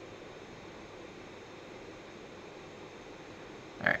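Steady low hiss of room tone with no distinct sound in it; a woman's voice says "Alright" right at the end.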